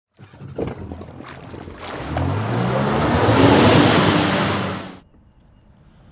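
Intro sound effect of waves washing, with a low engine-like drone rising in pitch beneath it. It swells to a loud peak and cuts off suddenly about five seconds in, leaving faint outdoor ambience.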